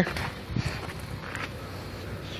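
Faint rustling and a couple of soft knocks from a person climbing down off a tractor and stepping onto the ground.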